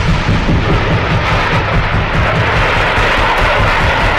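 Dramatic news background music laden with heavy booming and rumbling effects.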